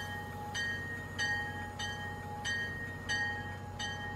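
A bell-like tone struck over and over, about three strikes every two seconds, ringing over a steady low hum.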